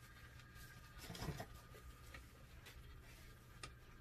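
Near silence: faint room tone with a low steady hum and a few soft clicks.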